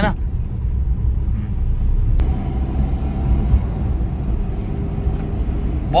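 Steady low rumble inside the cabin of a Renault Kwid on the road: the freshly overhauled three-cylinder petrol engine under light throttle, mixed with tyre and road noise. It is running smoothly with no knocks or abnormal noises, which the mechanic takes as a sign of a good overhaul.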